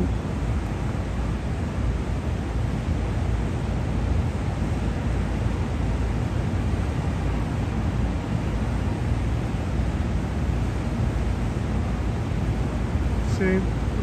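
Steady low rumble of city background noise, an even wash with no distinct events.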